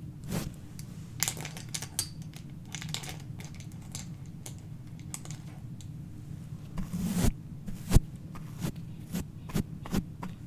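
Close-miked brushing and scratching on the metal mesh grille of a condenser microphone: irregular crackly strokes and small clicks, with two louder knocks about seven and eight seconds in. A steady low hum runs underneath.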